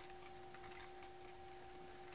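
Very quiet: a faint steady hum on two pitches, with a soft click near the start as rubber bands are hooked over the clear plastic pegs of a Rainbow Loom.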